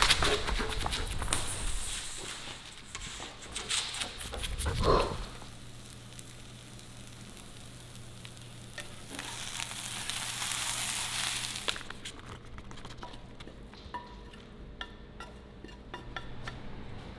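Irregular scuffing and knocking for the first five seconds, then shredded chicken frying in a pan. It sizzles loudest for about three seconds after hot sauce is poured over it and stirred with a wooden spatula, and a few light clinks follow near the end.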